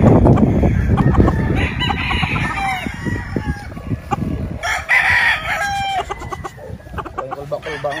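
Gamefowl roosters crowing: two long crows, one about a second and a half in and another about five seconds in, after a low rumbling noise at the start.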